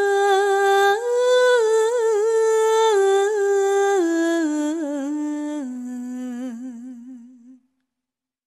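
Background music: a solo voice humming a slow melody in long held notes with vibrato, fading out near the end.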